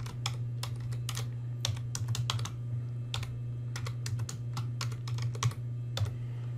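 Typing on a computer keyboard: an irregular run of sharp key clicks, over a steady low hum.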